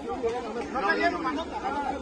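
Several men's voices talking over each other in a crowd, one saying "no" about a second and a half in.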